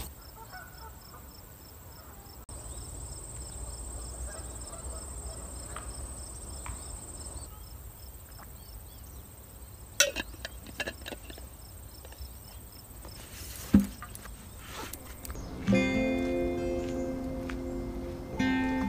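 Insects, crickets among them, trilling steadily at a high pitch with a faster pulsing chirp beneath, broken by a couple of sharp knocks. Acoustic guitar music comes in near the end.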